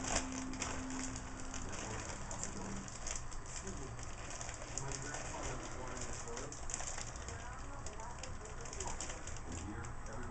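Packaging rustling and crinkling as a package is handled and opened by hand: a steady run of small crackles.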